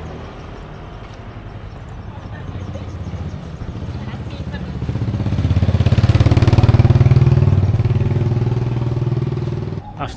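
A motor scooter's small engine passing close by: it grows louder about five seconds in, is loudest a second or two later, then fades away. Another vehicle's sound dies away at the start.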